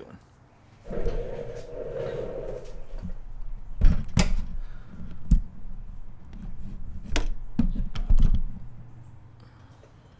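Camera handling noise as the camera is moved and set up: rustling, then a series of sharp knocks and thumps, the loudest about four and eight seconds in.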